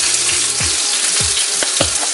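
Cream sauce with spinach simmering in a frying pan: a steady sizzle with a few short pops from bursting bubbles.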